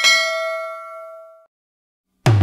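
Notification-bell ding sound effect from a subscribe-button animation: one bright ring that fades and cuts off suddenly about one and a half seconds in.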